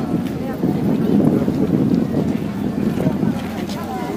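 Wind buffeting the microphone in an uneven low rumble, over the voices of a strolling crowd.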